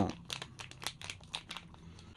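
Plastic supplement stick pouches crinkling in a run of short crackles as a small dog noses at them in a person's hand.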